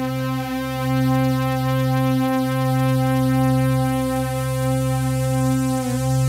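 Synthesizer music: a sustained chord held as a steady drone, swelling slightly every second or two.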